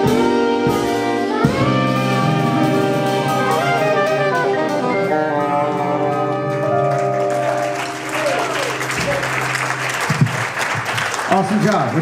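Small jazz combo of saxophones, piano, upright bass and drums ending a bossa nova on a long held final chord. Applause follows from about seven seconds in.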